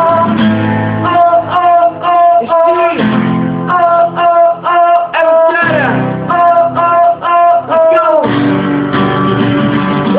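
Two acoustic guitars strummed, with a male voice singing a melody in short, repeated notes.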